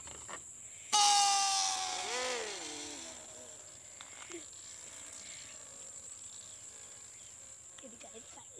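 Long rocket balloon released, the air rushing out through its neck in a loud pitched whine that starts suddenly about a second in. The pitch slides down and wavers as the balloon flies off, fading away over about two seconds.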